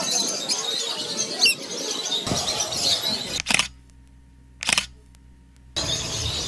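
A flock of rosy-faced lovebirds chattering with many shrill chirps, one rising call standing out about a second and a half in. After about three seconds the chatter cuts off abruptly to a low steady hum, broken by two short loud bursts, before the sound returns near the end.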